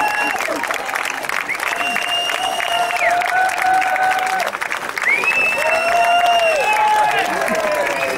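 A crowd applauding, with a slow tune of long held notes, several at once, playing over the clapping.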